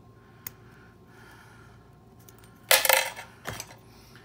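Metal clinking as a rifle magazine spring is pried off its follower: a light tick about half a second in, then a sharp metallic clatter about three seconds in and a smaller knock just after.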